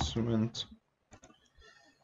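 A few faint computer keyboard keystrokes and mouse clicks, about a second in, after a drawn-out "um" in the first half second.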